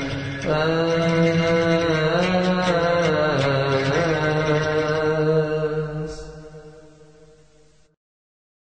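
Coptic liturgical chant: long held notes with slow ornamented turns over a steady low tone, fading out over the last two seconds.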